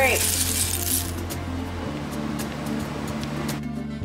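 Background music with steady low notes. Over it, roasted pumpkin seeds rattle and clink against a bowl as a spoon stirs them, loudest in the first second, then a few light clinks.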